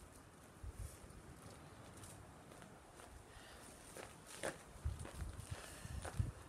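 Footsteps on dry grass coming closer, faint at first and louder with a cluster of thumps and rustles in the last two seconds.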